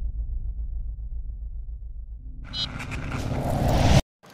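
Cinematic logo-sting sound effects: a deep pulsing rumble slowly dies down, then past the halfway mark a rising whoosh swells with a few brief high chimes, building until it cuts off suddenly.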